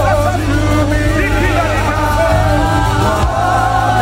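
Live gospel worship music: a band with a steady bass line under several voices singing together.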